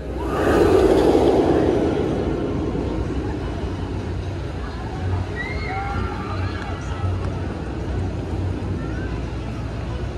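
Launched steel roller coaster train rushing along its track. The rumble swells in the first second and fades slowly over the next several seconds, with faint distant voices of riders and the crowd.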